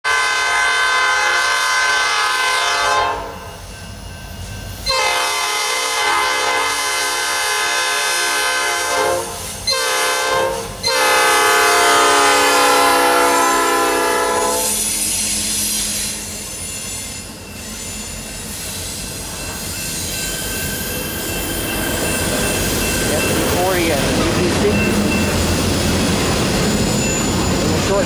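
Diesel freight locomotive air horn sounding the grade-crossing signal, long, long, short, long, as the train approaches. Then the EMD locomotives and the double-stack intermodal cars roll past with a steady rumble and clatter of wheels on the rails.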